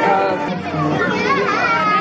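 Background music with children's voices chattering over it, the voices coming in about a second in.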